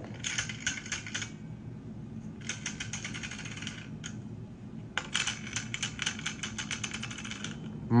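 Rifle bipod legs being adjusted by hand, the notched legs ratcheting in three runs of rapid clicks, the last and longest run starting about five seconds in.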